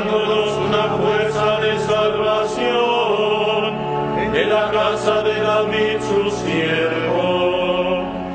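Liturgical chant sung in long, held notes with musical accompaniment, the voices sliding between pitches.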